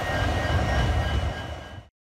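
EMD WDG4 diesel-electric locomotive passing, a steady low rumble of its 710-series two-stroke engine and running gear. It fades out in the last half second and cuts to silence.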